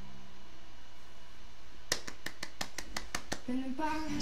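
A quick run of about nine sharp clicks, roughly six a second, starting about two seconds in over a faint steady room hum. A low tone begins just before the end.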